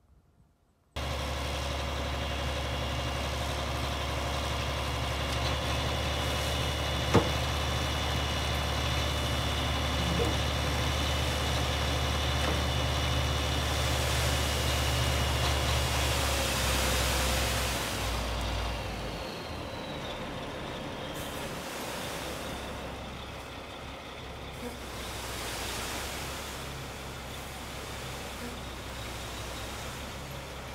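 Dump truck's diesel engine running steadily with the bed hoisted while the load slides out onto the ground, a rushing hiss swelling about halfway through. Near two-thirds of the way in the engine drops back to a lower, quieter run. There is a single sharp click about a quarter of the way in.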